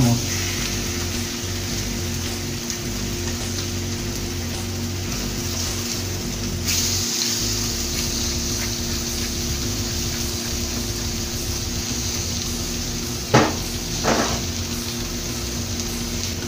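Thin beef steaks frying in a little oil on a hot comal, giving a steady sizzle that gets louder about seven seconds in. Two short knocks come close together near the end.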